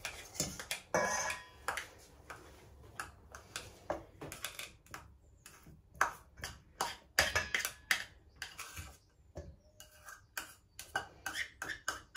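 Metal utensils and a knife tapping, clinking and scraping against a stainless steel mixing bowl, in scattered light taps. A brief metallic ring comes about a second in.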